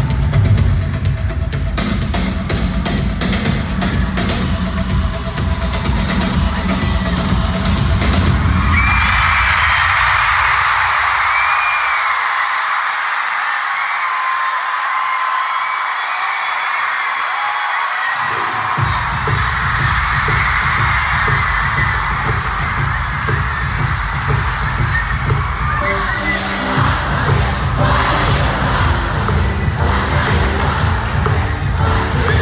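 Concert music over an arena PA, with drums and heavy bass; the beat cuts out about nine seconds in, leaving a large crowd cheering loudly. A deep bass comes back around eighteen seconds in and the music builds again under the cheering.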